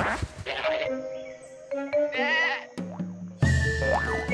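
A cartoon sheep's short, wavering bleat about two seconds in, over background music. A few falling swoops sound near the start.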